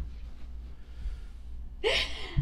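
A woman's sharp gasping in-breath of laughter near the end, loud against a quiet room with a low steady hum.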